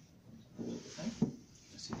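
Brief, low speech in a small room, then a short, sharp click just before the end.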